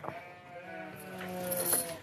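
A cow giving a low, drawn-out moo, with a few light clicks and rattles around it.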